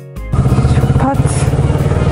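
A moment of piano music, then, about a third of a second in, a Kawasaki Ninja 650's parallel-twin engine cuts in loud, running at low revs.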